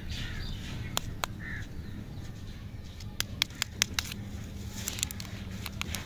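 A lollipop wrapper crinkling and crackling as it is handled and peeled open, a string of sharp crackles that come thickest in the middle and near the end.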